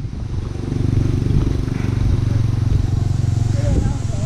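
Motorcycle engine running at a steady, low, even pitch, starting about a second in and fading just before the end.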